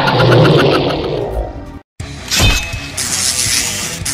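Edited-in sound effects over music. A loud rumbling, rattling noise fades and then cuts off suddenly just under two seconds in. After a brief silence comes a sharp hit, then a bright rushing whoosh as the versus title card comes up.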